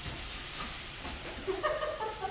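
Faint, steady sizzle of food frying in a pan, with a faint voice near the end.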